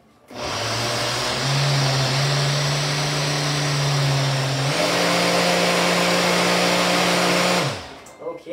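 Single-serve blender running loud, blending strawberries, vinegar and mustard into a vinaigrette. The motor starts just after the beginning, its pitch steps up partway through, and it winds down and stops near the end.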